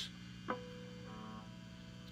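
A three-string cigar box guitar string is struck once about half a second in and rings faintly as one sustained note, with a few fainter higher tones joining a little later. A low steady hum runs underneath.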